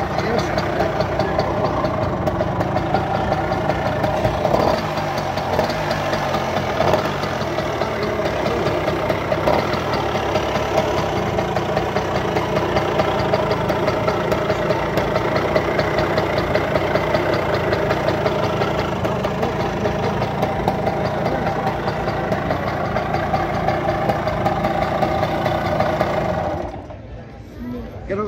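An old, rusted Tomos moped's small two-stroke engine running steadily with a fast, even beat, then cutting out suddenly near the end.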